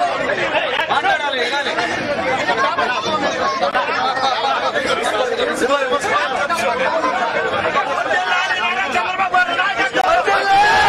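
A crowd of people talking at once, many voices overlapping into a continuous chatter.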